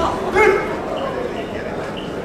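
A short, loud shout about half a second in, over a steady chatter of voices in a large hall.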